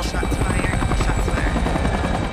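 Helicopter flying close by, its rotor blades chopping in a fast, even rhythm over a deep thrum, loud throughout.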